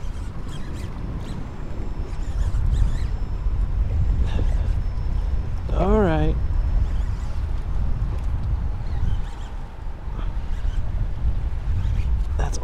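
Steady low rumble of wind on the microphone and choppy water around a kayak in rough swells, with a few faint clicks and one short hum from the angler about six seconds in.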